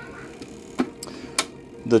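Three short clicks from a hand working the switches and knobs of a homemade pellet-stove bypass control box, the last the sharpest, over a steady low hum.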